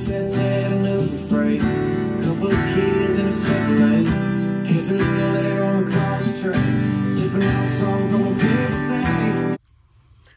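Acoustic guitar strummed with steady down strums through the intro progression E minor, D, C add9, G, about two strums a second, cutting off abruptly near the end.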